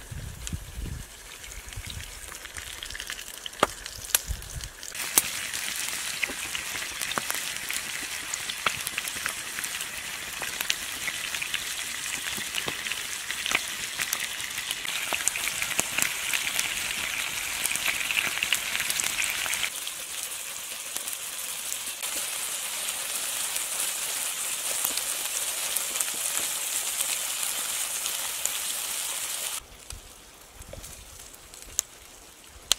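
Burger patties frying in a skillet over a campfire: a dense, steady sizzle with many sharp pops. It grows louder about five seconds in and cuts off just before the end.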